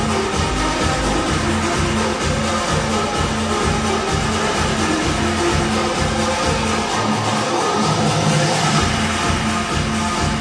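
Electronic dance music goal song with a steady beat; the bass drops out for about two seconds a little past the middle, then the beat comes back in.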